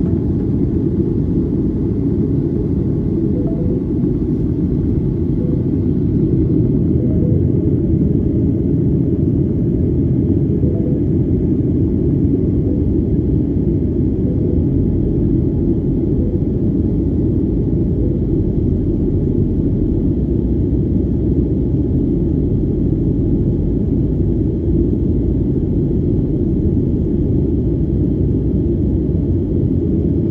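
Steady low rumble of a jet airliner in flight as heard inside the passenger cabin: engine and airflow noise.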